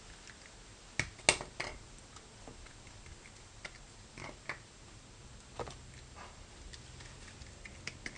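Metal spring clamps being unclipped from a vacuum-forming frame: a few scattered clicks and light knocks, the sharpest about a second in, then more spaced out over the following seconds.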